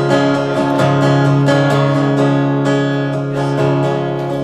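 Steel-string acoustic guitar strummed in a steady rhythm, its chords ringing on between strokes.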